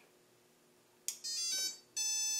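HobbyKing BlueSeries 30 A ESC, flashed with SimonK firmware, sounding its startup tones through a brushless multirotor motor: a click about a second in, then a quick run of rising beeps. These are the rising tones of SimonK's 'three rising tones and a beep' sequence, the sign that the throttle range is properly calibrated and the ESC is ready to arm the motor.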